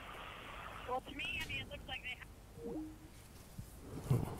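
Faint rushing noise that stops about a second in, followed by brief, faint snatches of voice and then near quiet.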